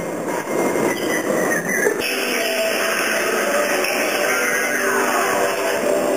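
Experimental live music: a dense, rough noisy texture with bleating, honking tones. About two seconds in it changes abruptly, and a slow falling glide follows.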